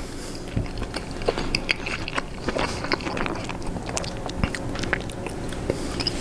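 A person chewing a mouthful of Chicago-style hot dog and bun, with many small, irregular mouth clicks.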